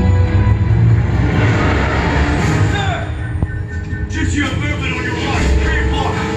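A film soundtrack played back through room speakers: a tense music score over a heavy low rumble of effects. From about two-thirds of the way in, voices come in over the music.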